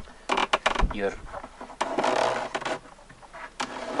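Wooden adjusting peg under a hand quern twisted by hand: a few short wooden clicks, then a creaking scrape about two seconds in. Turning the peg shortens a string that raises or lowers the upper millstone, setting how fine or rough the meal is ground.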